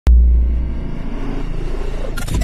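Deep bass impact opening a TV channel's logo ident: a sharp click at the very start, then a low rumble that slowly fades.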